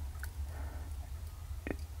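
Quiet room tone with a steady low hum and one short click near the end; the music box is not playing.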